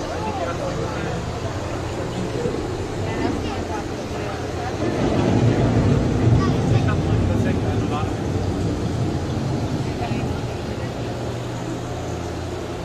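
Dark-ride boat ambience: a steady low hum under a general haze of noise with faint, indistinct voices. A broad rumble swells about five seconds in and fades over the next few seconds.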